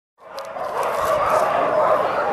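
A frightened small dog whining in a steady, wavering cry that begins a moment after the start.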